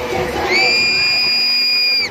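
Concert crowd cheering, then about half a second in a single loud, shrill scream, one steady high note held for about a second and a half before it breaks off.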